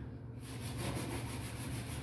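Scouring side of a kitchen sponge scrubbing a stainless-steel sink drainboard, a rasping rub in quick back-and-forth strokes that starts about half a second in, working at stuck-on grime.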